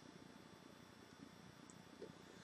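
Near silence: faint room hiss.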